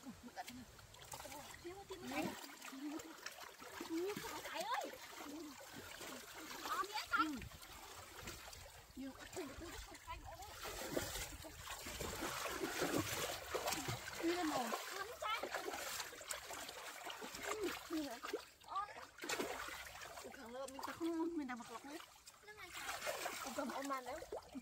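Water splashing and sloshing in a shallow stream as hands grope about under the surface and legs wade through it, densest in the middle. Women's voices talk and exclaim over it.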